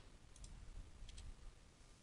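Near silence with two faint computer mouse clicks, about a third of a second and just over a second in.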